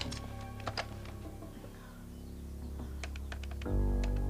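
Quiet background music with a series of short, sharp clicks from a desk telephone being picked up and its buttons pressed, a quick run of about five clicks about three seconds in. The music swells louder near the end.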